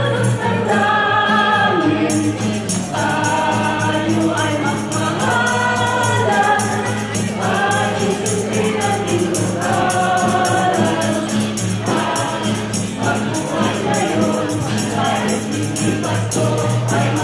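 A small choir of mixed voices singing a Christmas song together, with an acoustic guitar strummed along and a jingling hand percussion keeping a steady beat.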